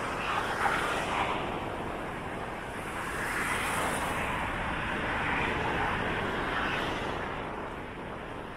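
Road traffic on a multi-lane city street: cars driving past with tyre and engine noise that swells and fades, once shortly after the start and again in a longer pass from about three to seven seconds in.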